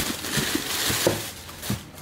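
Plastic packaging wrap rustling and crinkling as it is pulled out of a cardboard parcel box, dying away near the end.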